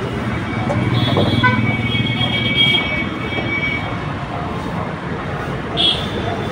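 Steady street traffic rumble with indistinct voices in the background.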